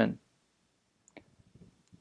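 The tail of a man's speech, then near silence with a couple of faint, short clicks about a second in.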